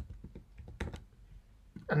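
Computer keyboard being typed on: a quick, irregular run of key clicks that thins out about halfway through, as a search word is entered.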